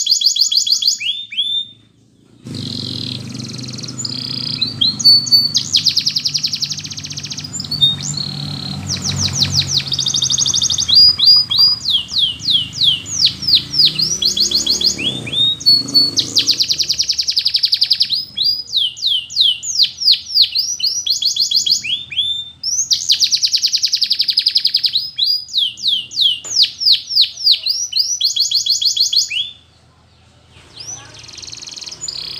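Domestic canary singing a long song of trills: runs of fast, rapidly repeated high notes that sweep downward, alternating with denser rolling passages. Short pauses come about two seconds in, around the middle and just before the end.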